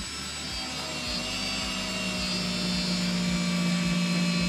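Cordless drill driving a screw into a wall stud, its motor whining steadily under load and growing gradually louder as the screw goes in.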